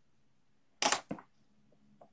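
Two sharp knocks about a second in, a quarter of a second apart, the first louder, against faint room tone.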